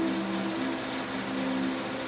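A low, steady drone of a few held tones, some dropping out and returning, with no other sound.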